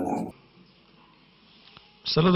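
A man's voice ending a word, cut off abruptly, then about a second and a half of near silence before the next recording begins.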